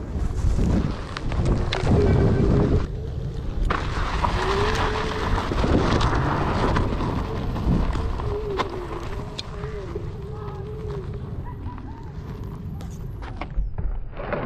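Low rumble and repeated buffeting as a one-wheel electric board with a SuperFlux hub motor climbs a steep dirt slope under heavy load. A faint wavering whine runs under it, and the loudest knocks come in the first few seconds.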